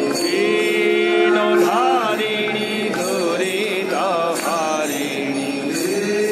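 Devotional chanting of mantras: voices hold long notes with wavering melodic turns, continuous throughout.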